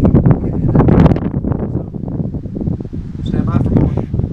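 Wind buffeting the microphone with rough handling noise as the camera is moved, and a brief indistinct voice near the end.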